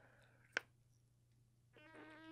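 Near silence broken by one sharp click about half a second in, a jaw cracking as the mouth opens wide to bite a giant gummy worm. Near the end a faint, strained whining hum rises from the throat while biting down.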